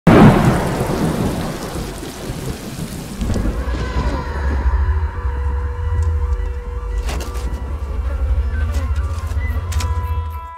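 A loud thunderclap with rain at the start, dying away over a few seconds into a deep low drone and sustained steady tones of a dramatic score, with one sharp hit about seven seconds in.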